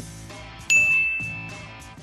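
A single high, clear ding sound effect: it strikes suddenly about two-thirds of a second in and rings on, fading out over the next second or so, over quiet background music.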